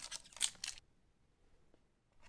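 Foil booster pack wrapper crinkling in a few quick rustles as the pack is handled and opened, stopping short about a second in.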